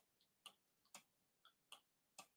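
Near silence with faint, sharp clicks, roughly two a second and a little uneven.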